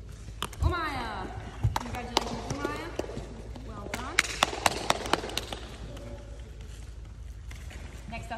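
Voices talking in a large hall, with a quick run of about six sharp hand claps around the middle and a couple of low thumps near the start.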